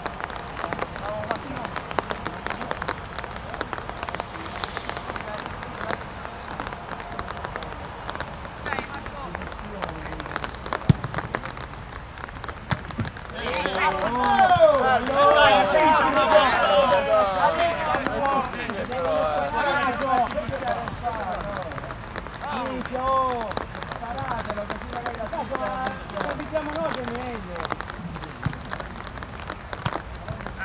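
Football players shouting over one another on the pitch during an attack on goal. Their voices rise into a loud burst of overlapping calls about halfway through, lasting several seconds, with scattered shouts before and after over a steady outdoor hiss. A single sharp knock comes shortly before the shouting starts.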